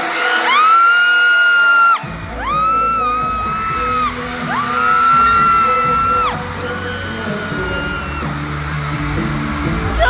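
Concert music over a PA: four long held high notes, the last one fainter, with a bass line coming in about two seconds in. Crowd yells and whoops run underneath.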